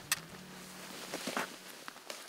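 Faint rustling of clothing and gear with scattered small clicks as a hunter bends down, a sharp click just after the start; a low background music tone fades out about a second in.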